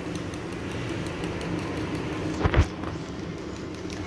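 Wire whisk stirring pancake batter in a bowl: soft swishing with faint ticks, over a steady low background hum. One thump about two and a half seconds in.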